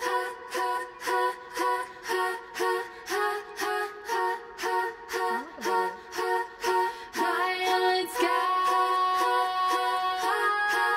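Playback of a multi-tracked female vocal harmony arrangement: short stacked chords repeat in an even pulse about twice a second, then give way to a long held chord with a rising swoop about seven seconds in.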